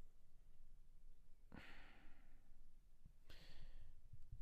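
Near silence broken by a sigh, a breathy exhale into the microphone, about a second and a half in, and a shorter breath near the end.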